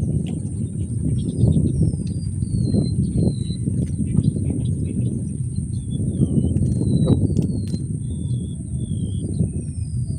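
Wind buffeting the microphone in an uneven low rumble, with a bird repeatedly giving short downward-sliding whistles over it and a steady high-pitched hum behind.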